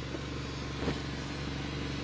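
A vehicle engine idling, a steady low even hum.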